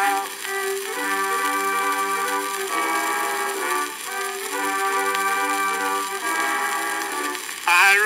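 Instrumental break in a 1910 acoustic-era recording of a popular song: the accompanying instruments play held melody notes in two phrases, each about three and a half seconds long. The sound is thin and without bass, with steady hiss above it.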